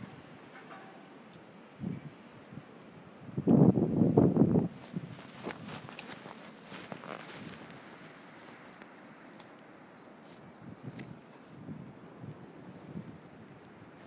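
Footsteps crunching in fresh snow, with rustling from a handheld phone microphone. About four seconds in there is a loud, brief low rumble on the microphone.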